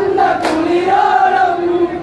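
Men's group singing an Onamkali folk song in unison, a chanted melody with one long held line. A single sharp click cuts through about half a second in.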